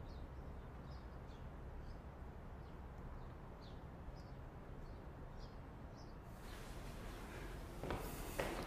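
Faint, short, high bird chirps, about eight of them a second or so apart, over a low steady room hum.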